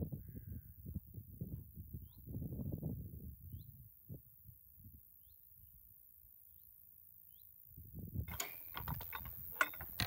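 Wind rumbling on the microphone, with a few faint, short, high bird chirps every second or so. From about eight seconds in come sharp clicks and knocks of a wooden field gate and its latch being handled.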